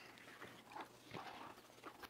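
Near silence: room tone with a few faint taps and rustles as a man handles a book and papers at a lectern and steps away from it.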